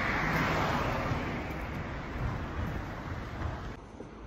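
A car passing on the street, its tyre and engine noise loudest at first and fading away over a few seconds; the sound drops off abruptly shortly before the end.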